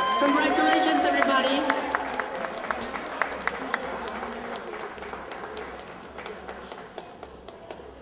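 Audience applauding, with whoops and cheers in the first second or two; the clapping then thins to scattered claps and fades away.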